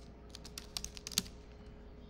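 Typing on a computer keyboard: a quick run of key clicks over about the first second, ending in one louder keystroke.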